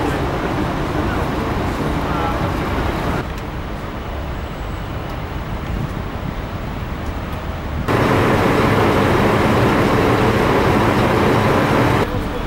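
City street ambience: traffic noise with some distant voices. The sound changes abruptly twice, dropping about three seconds in and jumping louder about eight seconds in, where it stays loudest.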